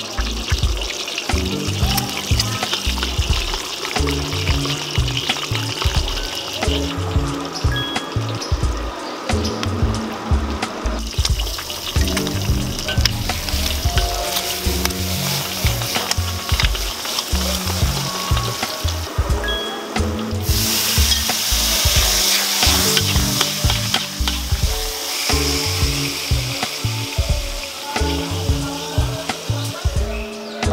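Eggs frying in hot oil in a wok, sizzling, under background music with a steady beat. The sizzle swells suddenly about two-thirds of the way through and eases a few seconds later.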